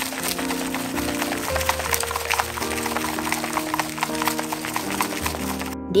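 Background music with held notes, over a fast, irregular patter of clicks and sticky squelches from wooden chopsticks stirring natto in its plastic tray.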